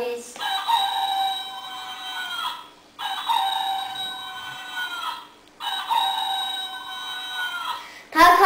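Electronic toy rooster playing a recorded cock-a-doodle-doo crow three times in a row. Each crow is identical, holds one pitch for about two seconds and drops at the end.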